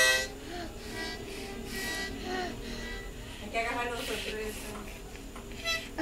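Small harmonica blown by a toddler: a loud chord at the very start, then soft, wavering held chords, with a short louder puff near the end.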